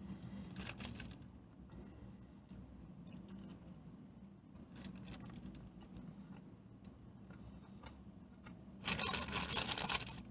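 Rustling and crinkling of burger packaging being handled: a few short, quiet rustles early on and around the middle, then a louder stretch of crackling in the last second or so.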